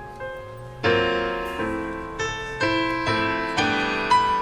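Swing big band playing a slow ballad in a quiet, sparse passage. A few single notes come first, then from about a second in there is a run of chords, each struck and left to fade, about two a second.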